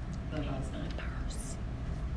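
Faint, low speech in the first half, over a steady low hum.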